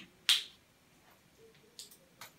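A whiteboard marker being handled between strokes: one sharp click about a third of a second in, then two fainter clicks near the end.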